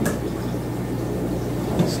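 Steady hum and bubbling of aquarium air pumps and filters running, with a sharp click right at the start and a smaller tick near the end.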